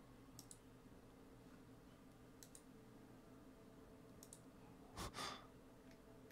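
Near-silent room with a low steady hum, computer mouse clicks in quick pairs three times, and a short breath out like a sigh about five seconds in.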